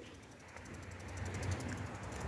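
Faint outdoor ambience: a low rumble that slowly grows louder, with a fast, faint, high-pitched ticking over it.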